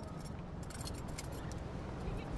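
Scuba gear clinking and rattling as divers kit up: a quick cluster of sharp metallic clicks about half a second to a second and a half in, over a low steady rumble.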